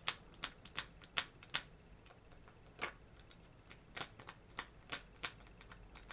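Close-miked tapping on the buckled straps of a pair of chunky clog heels: about a dozen sharp taps, irregularly spaced, with a pause of about a second in the middle.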